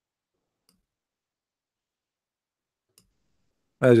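Near silence broken by two faint single clicks of a computer mouse, about a second in and near the end, then a man starts speaking.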